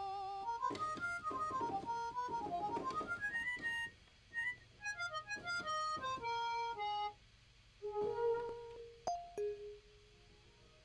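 Yamaha DX7 FM synthesizer playing its factory harmonica patch: a quick melodic line of single reedy notes stepping up and down, with a couple of short pauses, stopping shortly before the end.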